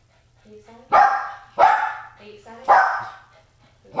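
Small dog barking at a person for attention: three loud, sharp barks, the first about a second in.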